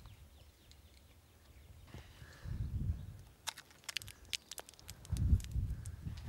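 Low gusts of wind rumbling on the microphone, twice, with a quick scatter of small sharp clicks and taps in between.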